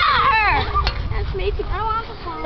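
Children's high-pitched voices squealing and laughing as they play, with a low rumble underneath and one short sharp tick just under a second in.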